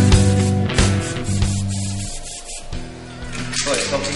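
Background music with a steady hiss of a Harder & Steenbeck Evolution airbrush spraying paint under it. The low notes of the music drop out briefly a little past halfway.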